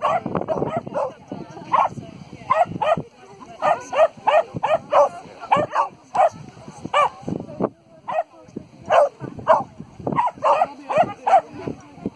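Small dog barking repeatedly while running an agility course, sharp barks often two or three a second, with a short pause about two-thirds of the way through.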